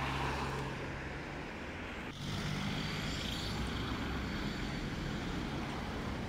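Street traffic: car engines humming steadily with road noise as cars pass close by. About two seconds in, the sound dips briefly and a slightly higher engine hum takes over.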